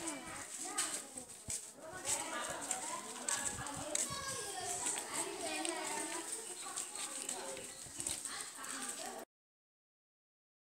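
Young girls' voices talking and chattering, not clearly worded, with scattered clicks; the sound cuts off abruptly about nine seconds in.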